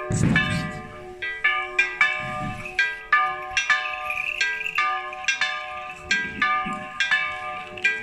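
Small monastery church bells rung in a quick, uneven peal, several pitches struck about two or three times a second and ringing over one another. There is a brief low rumble right at the start.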